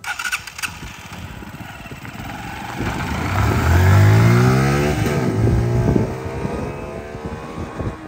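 Motorcycle pulling away and accelerating, its engine note climbing in pitch, dropping briefly about five seconds in and climbing again, then fading as the bike rides away.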